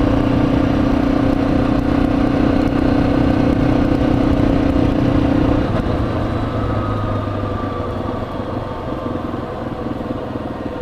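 Yamaha XT250's single-cylinder four-stroke engine running at a steady speed while riding. About six seconds in, its steady note drops away and the sound slowly grows quieter as the bike eases off.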